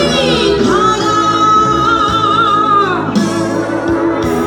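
A woman singing into a microphone over amplified backing music: her voice sweeps up about a second in to a long held high note with a slight vibrato, then falls away near the end.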